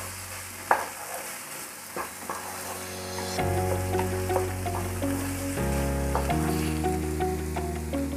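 Wooden spatula stirring and scraping paneer bhurji around a ceramic-coated frying pan as it fries, with scattered scrapes against the pan. Soft background music with held notes comes in about halfway through.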